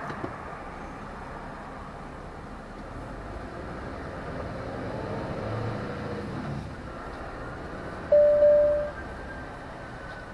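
Steady engine and road noise inside a lorry cab moving slowly, the engine note lifting briefly around the middle. Near the end, a loud single-pitched beep sounds for just under a second.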